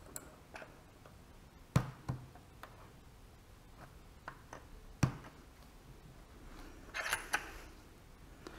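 A workbench clamp being set in a bench dog hole and tightened: scattered clicks and knocks, with sharper knocks just under two seconds in, about two seconds in and about five seconds in, and a short scraping rustle near the end.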